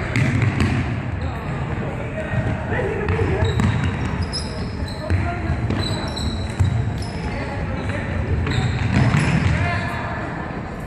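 Sports shoes squeaking and feet thudding on a wooden sports-hall floor as players run and cut, with short high squeaks scattered through, mostly in the middle. Players' voices call out across the hall.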